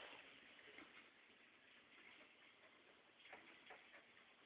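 Near silence: room tone with two faint clicks a little after three seconds in.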